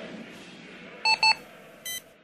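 Two short electronic beeps, like telephone keypad tones, in quick succession about a second in, then a third, buzzier beep at the end, over a faint fading background hiss.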